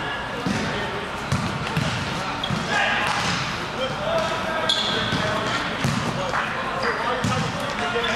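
Volleyball rally in a large gym: a string of sharp slaps as the ball is bumped, set and hit, about ten in all, with players' voices and calls throughout.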